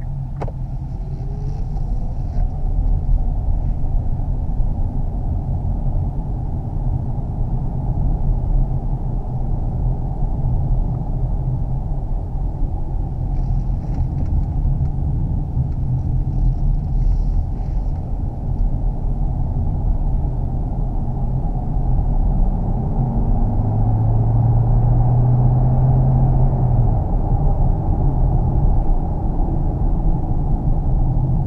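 Driving noise of a Kia Optima Plug-in Hybrid heard from inside the cabin: steady low road and tyre rumble that slowly grows louder. A low hum joins in for a few seconds about three quarters of the way through.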